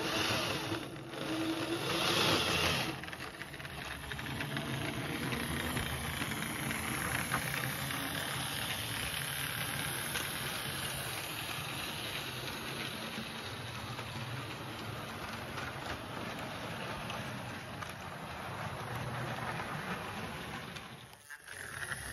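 Model railway prairie tank locomotive running along the track hauling coaches: steady hum of the small electric motor and rattle of the wheels on the rails. It is louder a couple of seconds in and fades away near the end.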